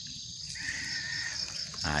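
Steady high-pitched chirring of an insect chorus, with a fainter drawn-out call lasting about a second in the middle.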